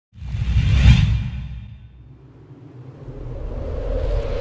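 Logo-intro sound effect: a whoosh over a deep rumble that swells to a peak about a second in and fades away, then a second whoosh building up again near the end.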